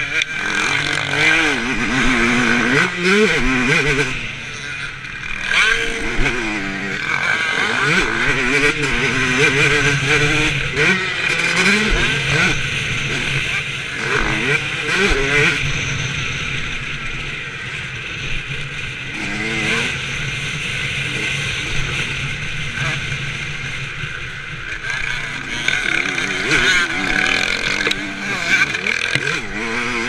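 Motocross dirt bike engine heard from on board the bike, revving up and falling back over and over as the rider accelerates, shifts and rolls off for corners.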